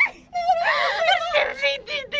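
A young woman wailing and whimpering in a wavering, sing-song voice, a mock lament.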